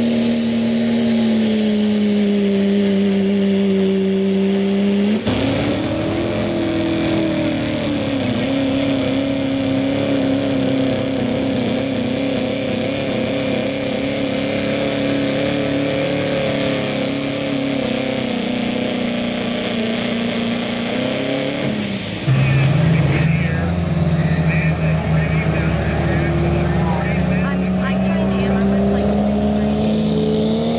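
Diesel pickup trucks in a sled pull, each engine held at high, nearly steady revs under full load. The sound cuts sharply to a new truck about five seconds in and again about 22 seconds in.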